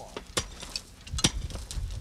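Work boots stamping and tamping loose soil and gravel fill down onto a rock retaining wall: a run of crunches and sharp stony knocks, the loudest a little past a second in, followed by dull thuds.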